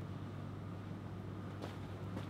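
Quiet café room tone: a steady low hum under a faint background hiss, with a faint click about one and a half seconds in.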